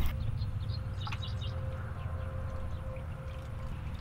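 Outdoor pasture ambience: scattered short, high chirps over a low, steady rumble.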